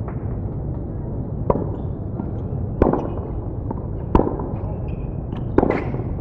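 Tennis rally: a ball struck back and forth by racquets, five sharp hits roughly every second and a half, over a steady low background rumble.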